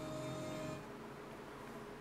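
Car radio playing music faintly, cut off about a second in as the radio is muted, leaving a low steady hum.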